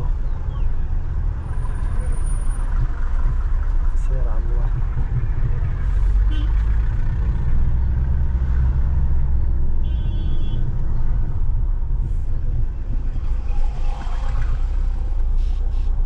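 Steady low rumble of a car driving slowly along a rough country road, engine and road noise heard from inside the car. Faint voices and a brief high tone about ten seconds in.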